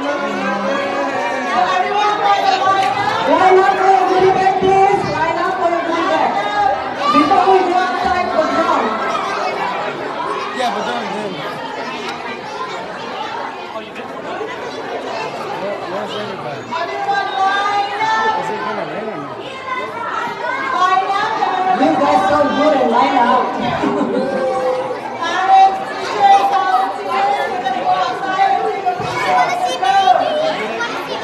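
Crowd of children chattering and shouting over one another, many voices at once, echoing in a large hall.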